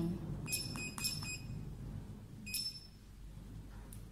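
Touchscreen control panel of a plasma skincare machine beeping at button presses while the energy level is set: a quick run of about four short high beeps with light taps about half a second in, then a single beep about two and a half seconds in.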